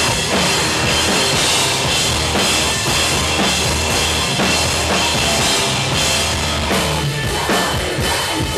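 A heavy rock band playing live, the drum kit pounding with bass drum and snare under a dense wall of band sound. Near the end the steady low notes drop out and the playing turns to choppier hits.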